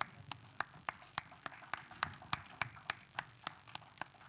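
Press photographers' camera shutters clicking in a rapid, irregular flurry, about four to five clicks a second.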